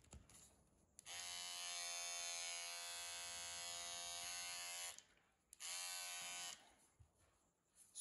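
Beardo PR3058/59 electric trimmer switched on and running with a steady pitched hum for about four seconds, then switched off. It runs again briefly, for under a second, a little later. A few light clicks come before it starts.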